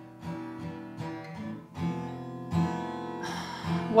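Acoustic guitar played live, slow chords picked or strummed and left to ring, with a fresh chord every second or so.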